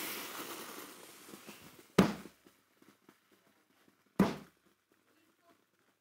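A steam iron's hiss fades out over the first second or so, then two sharp knocks come about two seconds apart.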